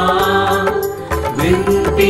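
Hindi devotional hymn: a sung melody over instrumental accompaniment with a steady beat, between two sung lines.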